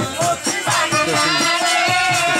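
Live Bengali folk music: sustained harmonium chords over a steady, quick drum beat.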